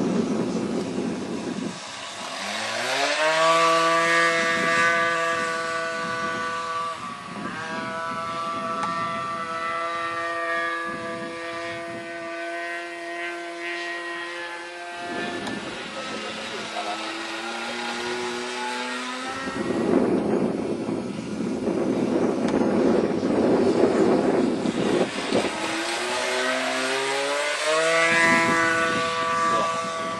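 Radio-controlled model biplane's 15 cc O.S. engine running in flight: its pitch climbs as the throttle opens, holds steady, then drops about halfway through. A loud rushing noise covers it for several seconds before the engine pitch climbs again near the end.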